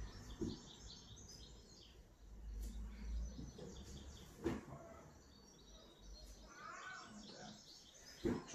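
Faint birds chirping in the background, with a single knock about four and a half seconds in.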